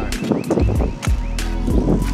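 Background music with a beat: deep bass drum hits about twice a second and sharp hi-hat ticks.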